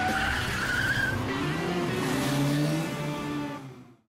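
Car engine revving and tyres squealing, a drifting-car sound effect mixed with music, fading out near the end.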